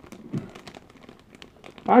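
Clear plastic bag around a lollipop crinkling faintly as it is handled: a scatter of small, irregular crackles. Talking resumes near the end.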